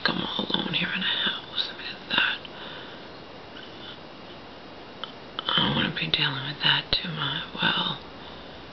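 A woman's voice speaking softly, almost whispering, in two short stretches with a pause of about three seconds between them, and a brief click near the end.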